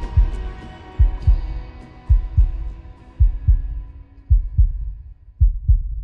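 A slow heartbeat: a paired low thump, about one beat a second, steady throughout. Under it a held musical tone fades out by about five seconds in.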